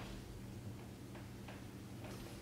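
Quiet room tone: a steady low hum with a few faint ticks.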